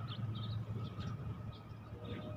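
A few faint, short bird chirps over a steady low background hum.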